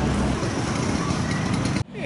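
Street ambience of traffic noise and a crowd's mixed voices, with a low vehicle rumble. It cuts off abruptly near the end.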